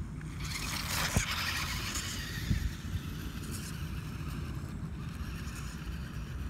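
Small electric drive motor and gears of a cheap 4x4 RC crawler running as it crawls over dry leaf litter and bark, with a steady low rumble of wind on the microphone. Two short knocks come about a second and two and a half seconds in.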